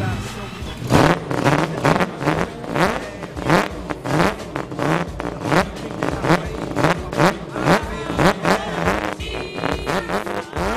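Drift car's engine revved in repeated sharp throttle blips, about two a second, each a quick rise in pitch starting with a crack.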